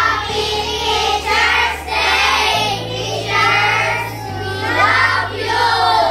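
A group of schoolchildren singing or chanting together in several phrases, over background music whose low bass note changes every second or two.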